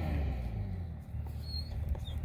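Faint squeak and scrape of a Teflon-taped plastic quick coupler being screwed by hand into a female threaded tee, with a short high squeak about one and a half seconds in, over a low steady rumble.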